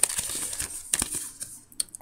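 Paper rustling and sliding as a printed safety leaflet is handled and pulled out of a cardboard box, with a few sharp taps. It dies away shortly before the end.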